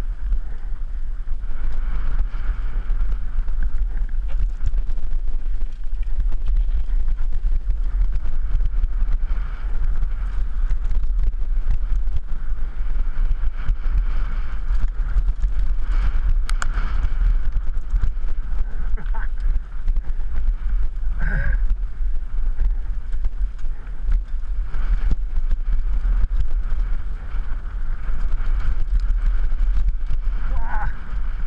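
Wind buffeting a helmet-mounted camera's microphone on a fast downhill mountain bike descent, over a steady low rumble of knobby tyres on a dry dirt trail with the bike's chatter and rattles over the rough ground.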